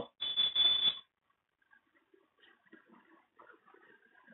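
Whiteboard marker squeaking briefly against the board as it writes, a high squeal with a scratchy edge lasting under a second near the start, then only faint scratches.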